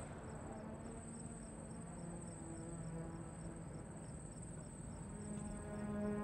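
Crickets chirping: a steady high trill with regular chirps about three a second, over soft, sustained background music that swells near the end.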